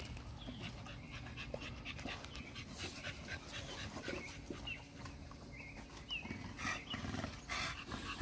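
American Bully dog panting quietly, a little louder near the end.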